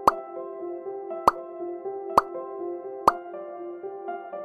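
Four short cartoon 'plop' pop sound effects about a second apart, over soft, gentle background music.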